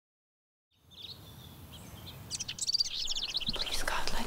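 Silence, then from about a second in a background ambience with a low rumble fades in, and a bird chirps in quick repeated notes between about two and three seconds in.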